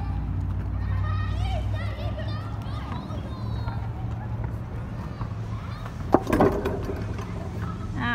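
Children's voices calling at a playground over a steady low rumble, with one sharp knock and a short loud burst about six seconds in.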